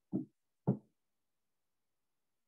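Two short knocks about half a second apart, the second louder.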